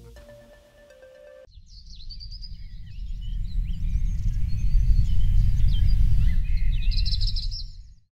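The backing music ends on a held note in the first second and a half. Then birds chirp over a loud, low rumbling noise that swells and cuts off suddenly at the end.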